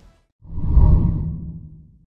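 Whoosh transition sound effect: a deep swell that starts about half a second in, peaks near one second and fades away.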